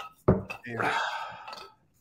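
A man's drawn-out, breathy groan just after downing a shot of liquor.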